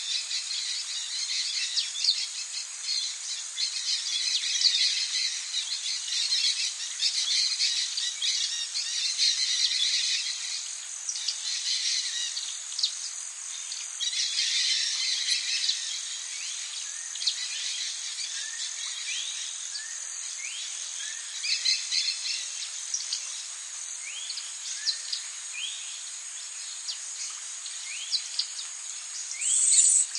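Birds chirping over a steady, high-pitched insect drone, with no low sounds at all. Busy, overlapping calls fill the first half, then give way to short rising chirps, about one a second.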